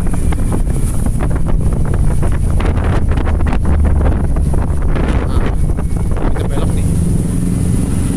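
Wind buffeting the microphone over the steady low rumble of a vehicle moving along a wet road in rain, with irregular gusts.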